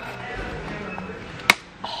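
Faint background music under shop-floor ambience, with one sharp click or knock about one and a half seconds in.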